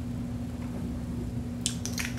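A steady low hum in a small room, with a quick cluster of soft, sticky lip smacks near the end as gloss-coated lips part.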